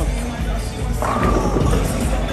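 Music over the steady low rumble of a bowling alley as a bowling ball rolls down the lane after release. A high note is held for about half a second, about a second in.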